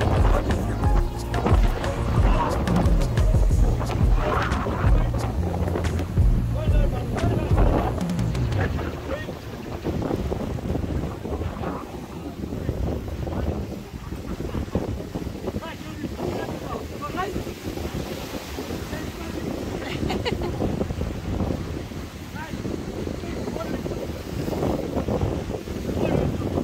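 Background music with a steady low bass line for about the first eight seconds. Then wind buffeting the microphone over surf washing against the rocks below, with some indistinct voices.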